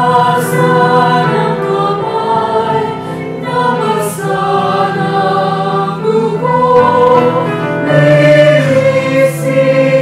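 A church choir singing a Tagalog hymn in held, blended chords that change every second or two.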